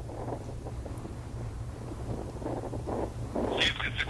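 A steady low rumble. A faint voice, band-limited like a radio or phone line, comes in near the end.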